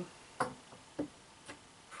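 A few faint clicks and light knocks from a wooden stamp being handled over the work table: one sharper click about half a second in, then fainter ticks about a second and a second and a half in.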